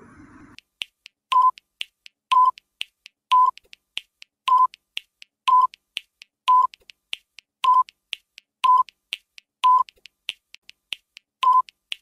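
Quiz countdown timer sound effect ticking like a clock, starting just under a second in: a louder, pitched tick once a second, with a fainter tick between each.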